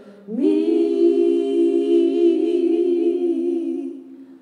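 A woman singing unaccompanied and without words: a note that slides up and is held for about three seconds with a slight waver, fading near the end.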